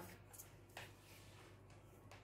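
Near silence: room tone with a low hum, broken by a couple of faint soft ticks in the first second.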